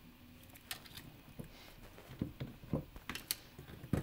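Faint scattered clicks and taps of small metal parts being handled during soldering: a soldering iron, tinned wires and an XT60 connector held in helping-hand clips. The clicks come more often in the second half, with a sharper click near the end.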